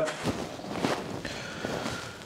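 Irregular rustling and light knocks of an aircraft engine cowling being handled.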